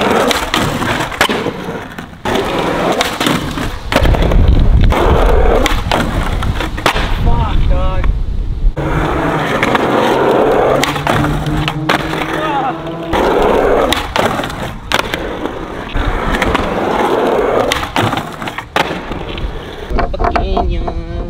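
Skateboard wheels rolling on concrete, broken by repeated sharp pops, the trucks grinding the wood-topped ledge, and landings.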